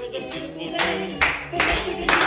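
A recorded children's song playing while a group of people clap their hands in time. The claps start about a second in and come about two a second.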